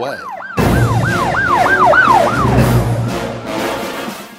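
A siren sound effect wailing up and down quickly, about three cycles a second, with a loud music hit about half a second in. The wail fades out over the last second.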